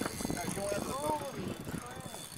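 Faint, muffled voices over a steady hiss of wind and water.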